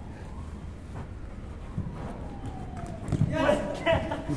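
Men's voices calling out on an indoor futsal court, growing louder in the last second, over quieter court background. There is a single faint thud about two seconds in.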